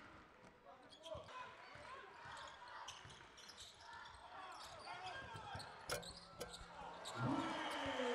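Faint live court sound from a basketball game in an arena: a ball bouncing on the hardwood floor in scattered thuds, with voices in the hall and a long falling voice-like call near the end.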